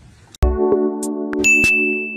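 Outro music starts suddenly about half a second in: a sustained chord with sharp percussive hits, and a high, bell-like tone entering about halfway through.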